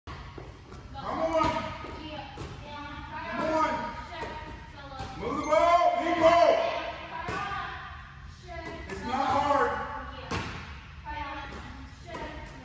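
Basketballs bouncing on a gym floor and slapping into hands, with raised voices calling out several times, loudest about halfway through. Everything echoes in a large hall.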